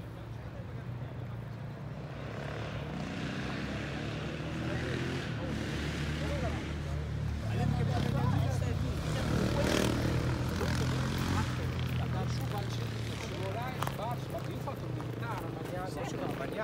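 A low engine drone that swells to its loudest about halfway through and eases off again, as something passes by. Faint voices can be heard in the background.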